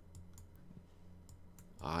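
Faint scattered clicks and taps of a stylus on a drawing tablet while an equation is handwritten, over a low steady hum. A voice starts speaking near the end.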